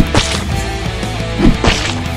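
Two sharp whacks about a second and a half apart, each a quick low knock followed by a bright crack, over steady background music.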